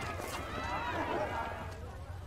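Children's voices calling, over a steady low hum.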